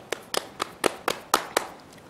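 Hands clapping in a steady rhythm, about eight sharp claps at roughly four a second, stopping shortly before the end.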